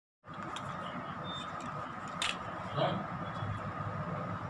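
A two-piece rugged plastic phone case being handled, with one sharp click a little over two seconds in, over a steady background hum.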